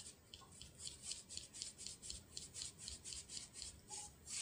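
Fingertip swiping repeatedly across a smartphone's glass touchscreen, faint, quick rubbing strokes about four a second.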